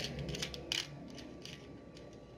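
Loose electronic components clicking and rattling against each other and a plastic tub as a hand rummages through them. There are a few light clicks in the first second, then it goes faint.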